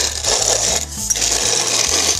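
Victoria hand-cranked cast-iron grain mill grinding hard white wheat, its plates tightened for a finer grind: a continuous gritty rasping with a brief dip about a second in.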